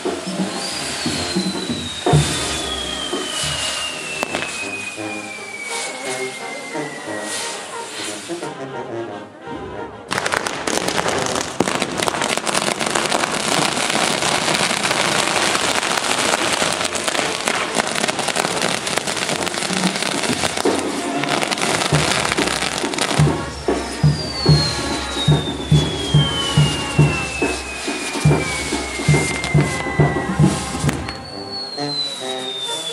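Music with a long falling whistle-like tone. About ten seconds in, it gives way abruptly to some twelve seconds of dense crackling and hissing from the burning, spinning pinwheels of a castillo firework tower. After that, music with a steady beat of about two pulses a second returns, with the same falling tone.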